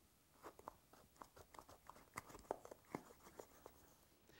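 Utility knife blade cutting into a tennis ball's felt-covered rubber shell: a faint, irregular series of small crunching clicks, a few a second.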